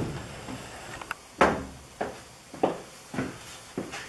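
Dull wooden knocks, about five of them a little over half a second apart, as a framed wooden stud wall is nudged into line on the plywood subfloor.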